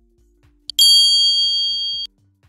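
A short click, then a bright bell-like ding with several high ringing tones that rings for over a second and cuts off abruptly. It is the sound effect of a subscribe-button and notification-bell animation.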